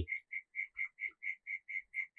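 A steady, even series of short high-pitched chirps, about four or five a second, from a small calling animal.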